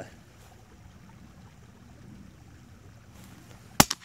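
A single sharp, loud rifle shot near the end, over faint steady background hiss.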